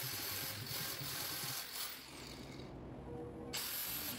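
Angle grinder grinding a weld bead flush on square steel tubing, a steady high-pitched grinding hiss that breaks off for under a second near the end and then starts again.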